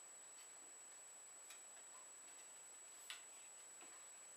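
Near silence: room tone with a faint steady high whine and a few faint clicks, the clearest about three seconds in.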